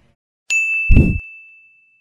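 Logo sound effect: a bright bell-like ding about half a second in, ringing on and fading slowly. A short, deep low thump just before the one-second mark is the loudest part.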